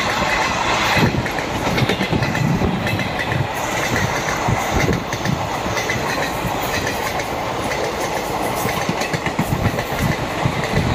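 Express train passenger coaches running past at speed: a steady loud rolling noise from wheels on rail, with a quick irregular run of clicks and knocks as the wheels pass over rail joints.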